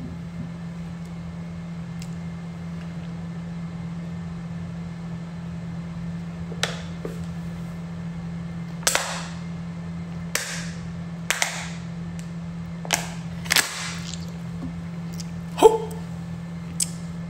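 A person drinking from a plastic bottle, with about seven short, sharp gulps and bottle crackles roughly a second apart, starting about six seconds in, over a steady low hum.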